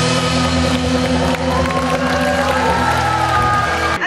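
A live band playing, with acoustic and electric guitars holding sustained chords over a steady bass line.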